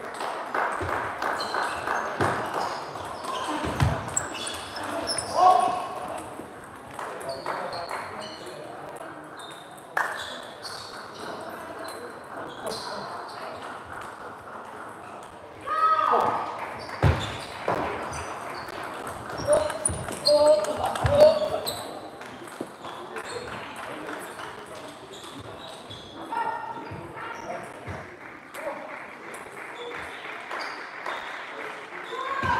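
Table tennis balls clicking on bats and tables from several games at once, with indistinct voices and a few louder calls from players.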